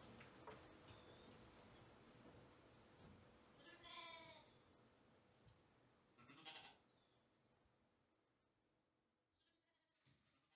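Shetland sheep bleating: two short, faint, wavering bleats, about four and six and a half seconds in, with a fainter one near the end, over quiet barn room tone.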